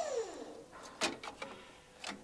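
The electric tipper's hydraulic pump motor winding down: its whine falls steadily in pitch and fades out. About a second in come a sharp knock and a few lighter clicks.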